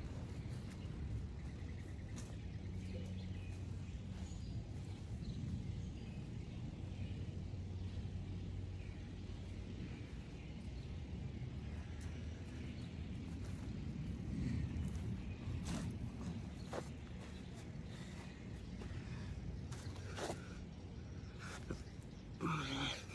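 Faint outdoor background: a low steady hum with a few scattered faint clicks.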